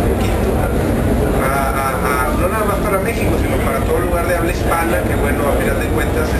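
Men talking in Spanish over a steady low rumble.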